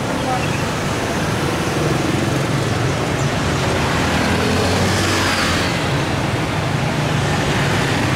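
Busy street traffic: motorbikes, scooters and cars running past in a steady stream, with one vehicle passing close about five seconds in as the loudest moment.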